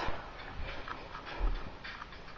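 Faint handling noise from a handheld camera being moved about, with a soft low bump about one and a half seconds in.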